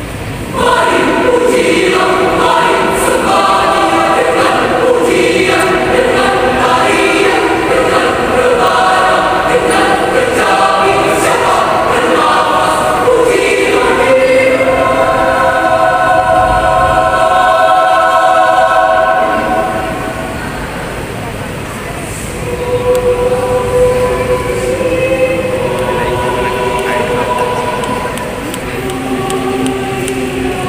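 Mixed youth church choir singing an Indonesian sacred song in several voice parts. The full choir enters loudly about a second in and sings sustained chords. Around two-thirds of the way through it drops softer for a couple of seconds, then builds again.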